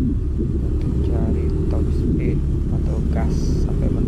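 Steady low rumble of a Yamaha Aerox 155 scooter being ridden, its single-cylinder engine mixed with heavy wind buffeting on the handlebar-mounted camera microphone.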